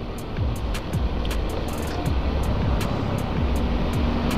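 Motorcycle riding noise, with wind rushing over the microphone, mixed with background music that has a steady beat of light ticks.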